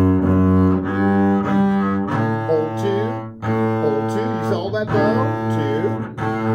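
Double bass bowed in long sustained notes at a slow practice tempo, changing pitch about two seconds in and again about three and a half seconds in.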